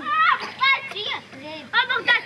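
A child speaking in a high voice, in several short phrases.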